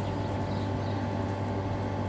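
Steady, even hum of an electric pump motor, most likely the pool's filter pump running the cleaner hose, with a low drone and a few thin steady tones.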